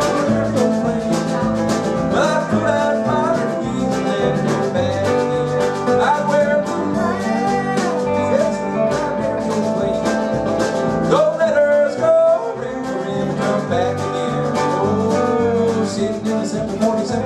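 Live country band playing: mandolin, guitar, electric bass and drums, with a lead line that slides up and down between notes.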